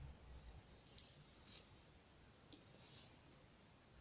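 Near silence with a few faint, brief rustles and clicks from doll clothes being handled and pulled from a toy wardrobe.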